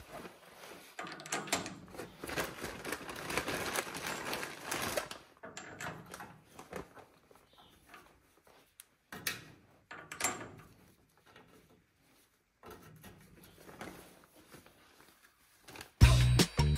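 Bolts and cross pins being fitted by hand into the steel brackets of a Unimog's rear three-point linkage rams: irregular metal clinks, scrapes and knocks, busiest in the first five seconds, then sparser, with a couple of sharper knocks around nine and ten seconds in.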